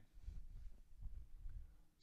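Faint, soft low thuds of feet stepping back on a training-hall floor during a retreating footwork step, a few of them in about two seconds.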